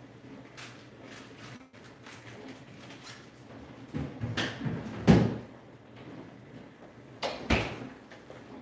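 A refrigerator door being opened and shut: a cluster of knocks and thumps about four to five seconds in, the loudest just after five seconds, then another double knock near the end.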